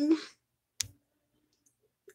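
The tail of a woman's voice, then a single short, sharp click a little under a second in.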